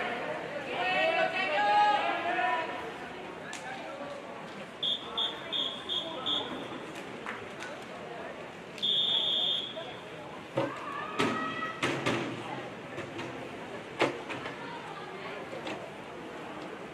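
A referee's whistle at a swim meet: five short blasts in quick succession, then a few seconds later one long blast. This is the usual swimming start sequence: short whistles call the swimmers to get ready, and the long whistle tells them to step up onto the blocks.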